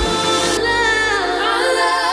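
Background pop song with a sung vocal line over held chords. The drum beat drops out at the start.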